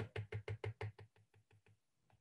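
A stylus tapping quickly on a tablet screen while dabbing a row of short dash marks, about six light taps a second, fading out after about a second and a half.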